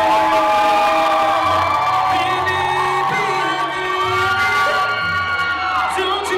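A male singer holding long sung notes live over a pop backing track, with the audience cheering.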